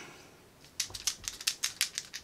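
A 60 ml container of Better Skin Lava Magic cleanser being shaken, something loose rattling inside in a quick run of about a dozen clicks starting just under a second in; she takes the rattle for an applicator packed inside.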